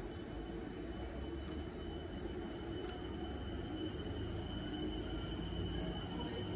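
A passenger train at the platform, giving a steady low rumble with a thin, steady high whine above it, growing slightly louder near the end.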